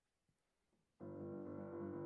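Near silence, then a grand piano begins about a second in, opening the piano introduction to a song with full, sustained chords.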